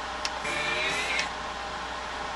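Car stereo radio hissing with static through a bare speaker while being tuned to a station, a steady hiss with a faint wavering tone coming through about half a second in.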